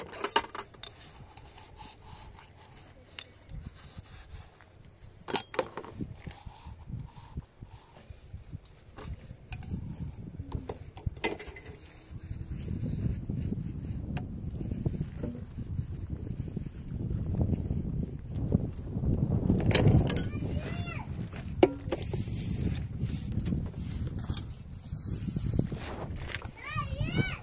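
Scattered clinks and knocks of metal pots and dishes being handled and washed in a plastic basin. About halfway through, a low, rough rumble sets in and grows louder.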